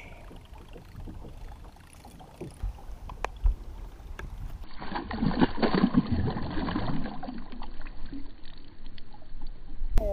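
Water splashing and churning at the side of a boat as a hooked bass thrashes at the surface, loudest a second or two after it starts. Before it, a few light knocks against low wind and boat noise.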